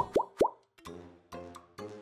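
Three quick rising bloop sound effects in the first half second, then light background music.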